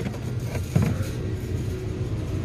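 A single click as a plastic gas can is gripped on the shelf, over a steady low hum.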